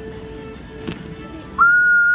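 A single loud, high whistle lasting under a second near the end, sliding up into one steady note and sliding down as it stops.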